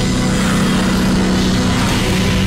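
A steady, loud low mechanical hum and rumble from an animated battle's sound effects.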